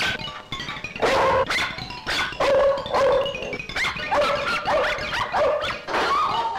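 Dog barking and yapping in short repeated bursts over comic background film music.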